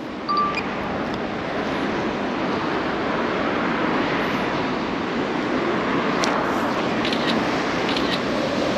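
Steady rushing noise of road traffic, swelling slightly over the first couple of seconds.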